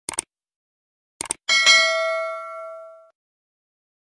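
A subscribe-button animation sound effect. Two quick mouse-style clicks come at the start and two more about a second in, then a bright bell ding rings out and fades over about a second and a half.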